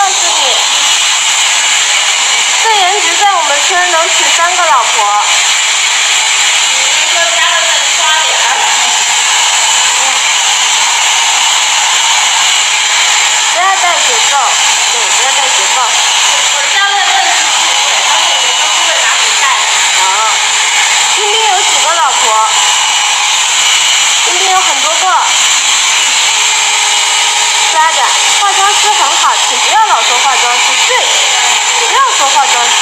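Handheld hair dryer running steadily, a continuous hiss of blown air, with voices talking over it now and then.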